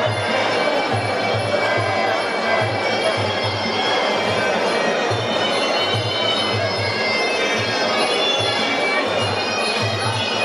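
Traditional Muay Thai sarama fight music: a reedy oboe (pi java) playing a nasal, bagpipe-like melody over a steady drum beat.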